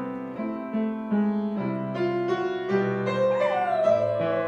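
Grand piano played in a run of struck notes. About three seconds in, a schnauzer starts to howl along in a wavering, gliding pitch.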